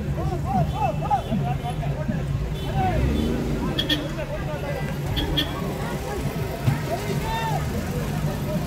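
A crowd of many voices talking and calling at once, over a low steady engine hum.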